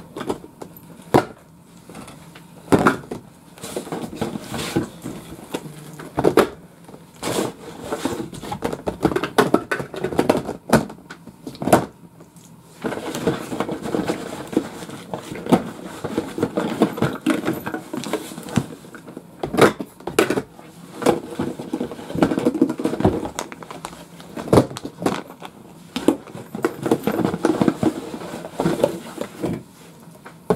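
Small metal cat-food cans knocking and clinking against each other and against a plastic storage bin as they are stacked in, in irregular sharp knocks.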